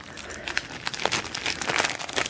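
Paper and plastic packaging crinkling and rustling in irregular bursts as items are handled and lifted out of a gift box lined with tissue paper.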